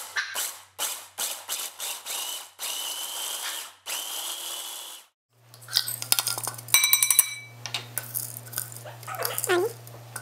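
Small electric food chopper pulsed on and off, its blades chopping walnuts and sunflower seeds. There are a run of short bursts, then two longer ones with a rising motor whine. After that come clicks, scraping and a ringing clink as the chopped nuts are scraped out into a bowl.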